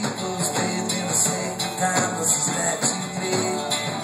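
Live full-band rock music in an instrumental passage: electric guitars and drums with a bouzouki, and cymbal hits recurring through the passage.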